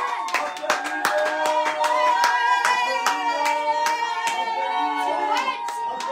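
A few people clapping their hands in quick, uneven claps, with voices calling out in long held notes over the claps.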